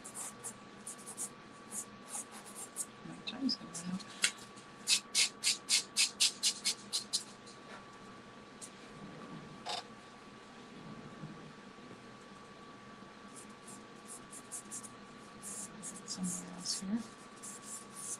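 Soft pastel stroked across paper in short scratchy strokes. There is a quick run of about four strokes a second a few seconds in, a pause in the middle, and more strokes near the end. A faint steady tone runs underneath.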